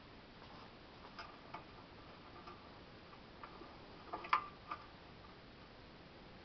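Light, irregularly spaced clicks and taps on a hard surface, with a quick run of louder taps about four seconds in.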